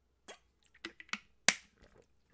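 A man drinking from a bottle: a series of short clicking gulps and mouth sounds, the sharpest about one and a half seconds in.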